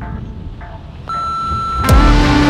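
Edited soundtrack: a low rumble dies away, then a steady high electronic beep tone holds for about a second and ends in a sharp hit as music starts.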